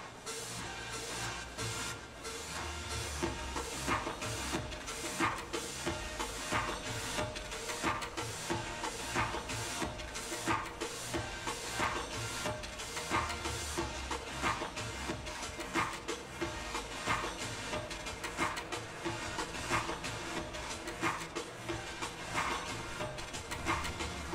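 High school marching band playing, with sharp percussion hits about every second and a quarter over sustained wind and brass sound.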